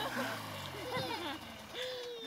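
Snowmobile engine slowing and falling in pitch as the machine pulls up and stops, fading under voices during the first second.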